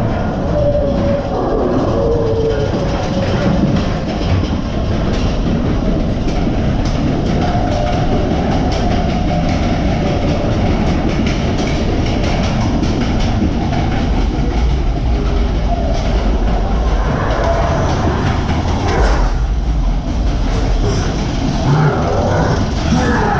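Matterhorn Bobsleds coaster car climbing the lift hill inside the mountain. A steady rumble is laid under rapid, continuous clacking of the chain lift and the anti-rollback ratchet.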